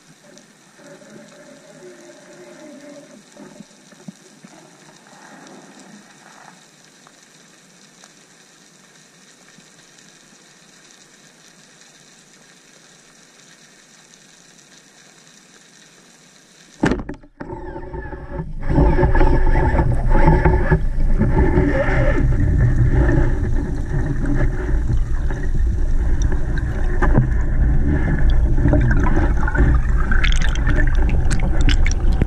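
Quiet underwater hiss from a camera housing held still over a seagrass bed. About 17 seconds in there is a sharp knock, followed by loud, churning water noise.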